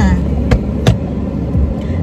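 Car cabin noise while driving: a steady low road rumble, with two short sharp clicks about half a second apart near the first second.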